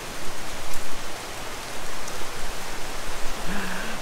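Rain falling steadily, an even hiss that swells and eases a little.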